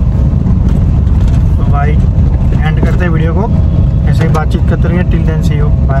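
Steady, loud low rumble of road and engine noise inside a moving car, with a man's voice talking over it from about two seconds in.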